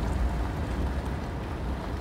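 Steady low rumble of a vehicle driving along, with road and wind noise, heard from inside the cabin.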